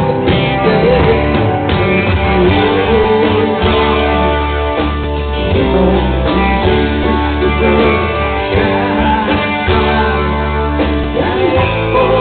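Live rock band playing, with an acoustic-electric guitar strummed over drums.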